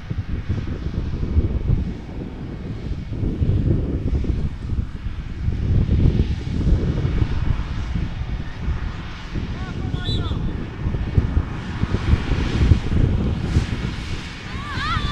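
Wind buffeting the camera microphone: an uneven low rumble that swells and fades in gusts. A distant voice shouts briefly about ten seconds in.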